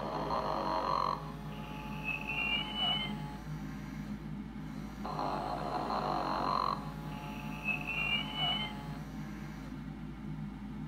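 The Tyco Sleep 'n Snore Ernie plush doll's voice box is playing its recorded snore: a rough snoring breath followed by a short rising whistle. The snore-and-whistle cycle plays twice.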